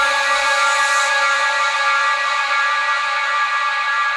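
Uplifting trance track in its breakdown: a bright, sustained synth chord held with the drums and bass cut out.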